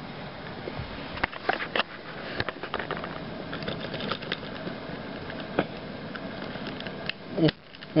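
Hard plastic toy parts of Power Rangers Zord toys clicking and knocking as they are handled and pushed together, a few scattered clicks over a steady background hiss.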